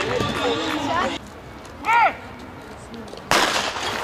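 Starting pistol fired to start a 200 m sprint: a sudden loud shot about three seconds in, after a hush. Voices at first, then a brief high-pitched call in the quiet before the shot.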